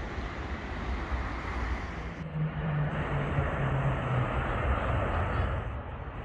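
Road traffic noise: a steady low rumble, with one vehicle's engine drone passing about two seconds in and falling slightly in pitch as it goes by.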